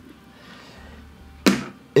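Quiet room tone, then one short, sharp click about one and a half seconds in.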